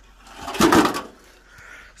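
A sheet of tin cover being moved on the forest floor: one short scraping rattle about half a second in, lasting about half a second.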